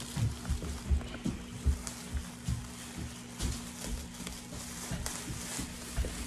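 Thin plastic shopping and produce bags rustling and crinkling as a bag of avocados is pulled out by hand, with irregular light crackles and soft bumps, over a steady low hum.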